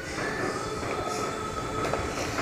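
Handling noise from a recording device's microphone rubbing and bumping against a cotton shirt as it is moved, with a thin steady whine underneath.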